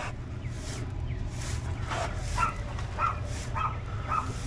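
Stiff-bristle hand brush stroked repeatedly over fresh concrete, giving it a broom finish: soft scratchy strokes about two or three a second. Short high-pitched chirps sound over it in the second half.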